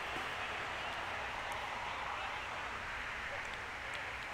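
Steady outdoor background ambience: a soft, even hiss with no distinct event standing out.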